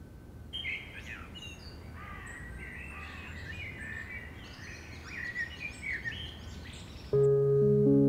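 Birds chirping, many short calls one after another over a low steady background hum; background music with held tones begins suddenly about seven seconds in.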